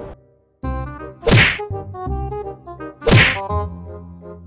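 Two sharp whack-like hit sound effects, one about a second in and one about three seconds in, over held musical tones.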